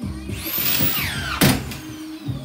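Power screw gun driving a screw down into floor sheeting: a motor whine that climbs in pitch and then falls, ending in a sharp loud crack about one and a half seconds in.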